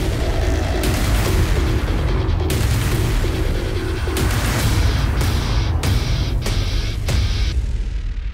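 Background music: a loud, dramatic soundtrack with a heavy low end and a steady, dense texture.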